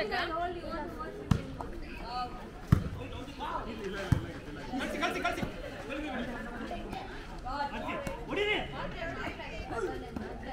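Three sharp smacks of a volleyball being struck, about a second and a half apart, over players' and onlookers' voices calling and chattering.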